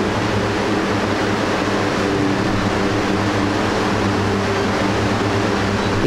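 Steady low hum with an even hiss over it, unchanging throughout: the background drone of running machinery in the room, like an air conditioner.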